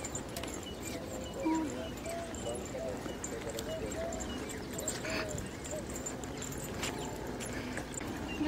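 Footsteps on a dry dirt path, with faint voices talking in the background.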